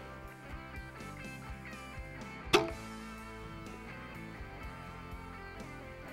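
A single sharp crack about two and a half seconds in: an Excalibur Matrix 405 recurve crossbow firing a bolt at close range. Soft guitar music plays underneath.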